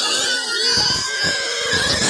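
A domestic pig squealing without a break, high-pitched and loud, in distress at being grabbed and held down by several people.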